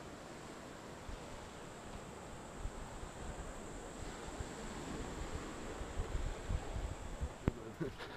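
Faint wind on an outdoor camera microphone: a soft even rush with low buffeting gusts that grow stronger in the second half, over a thin steady high tone.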